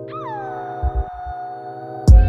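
Instrumental R&B beat with the drums dropped out: sustained keyboard chords, and a lead note that bends down in pitch and then holds. Two low bass hits come about a second in.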